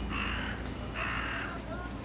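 A crow cawing twice: two calls of about half a second each, the second about a second after the first.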